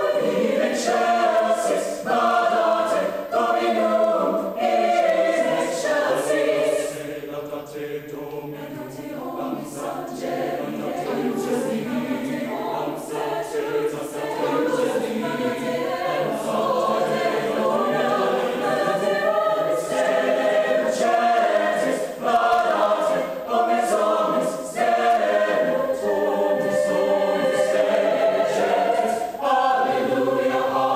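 Mixed choir of men's and women's voices singing together in sustained chords. The singing drops softer for a few seconds about a quarter of the way in, then builds back to full volume.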